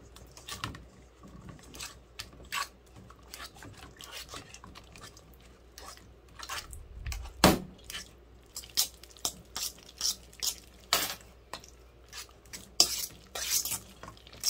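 A fork clinks and scrapes against a stainless steel mixing bowl as it mashes softened cream cheese and butter together. The strikes come irregularly, and the loudest is about halfway through.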